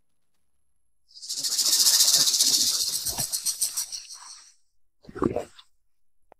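A loud rattling hiss starts about a second in and fades away over about three seconds, followed by a short, lower sound near the end.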